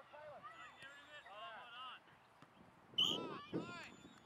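Children's high-pitched voices calling and shouting across an open playing field, with a louder burst of shouting about three seconds in.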